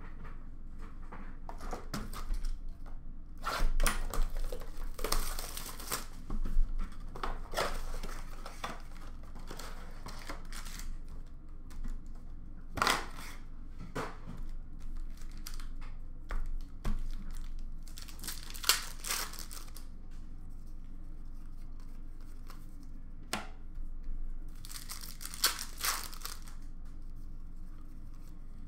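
Foil trading-card packs being torn open and their wrappers crinkled, in short, irregular bursts of tearing and crackling every few seconds.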